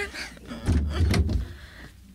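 A door sound effect: a sharp click, a low thud as the door swings and shuts, and another click about half a second later.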